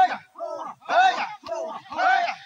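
A crowd chanting in unison: short shouted syllables, about two a second, with louder and softer calls alternating in a steady rhythm, like a group work chant.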